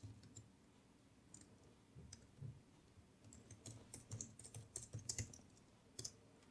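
Faint computer keyboard typing: a few scattered keystrokes, then a quicker run of them in the second half.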